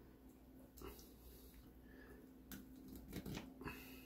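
Faint clicks and scrapes of a metal fork and spoon against a ceramic plate while prying the hard armour scales off a cooked hassar (armored catfish): a couple of ticks about a second in, then a quick cluster of clicks near the end, over a low steady room hum.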